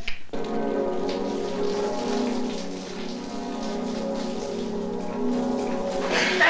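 Shower water spraying steadily, with a sustained chord of film score held underneath; both begin suddenly a moment in.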